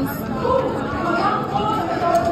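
Background chatter of other people talking.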